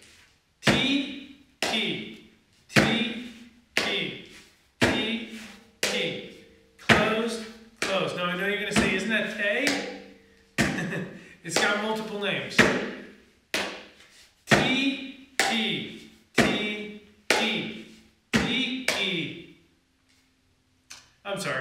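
Mridanga drum struck with the hands in a slow, even run of single strokes, about one a second, each ringing briefly before it dies away.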